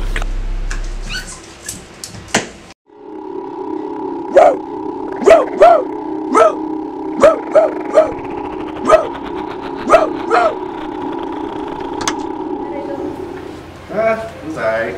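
About a dozen short dog-like barks, spaced unevenly over some nine seconds, over a steady low hum that cuts off just before the end.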